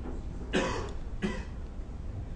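A man coughing twice, the first cough louder and the second shorter, over a steady low hum.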